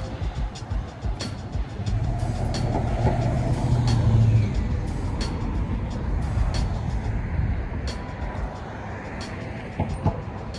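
City traffic heard from a moving rider, with a low rumble of wind and road throughout. A vehicle's low engine hum swells past from about two seconds in, loudest near four and a half seconds, over sharp ticks recurring throughout.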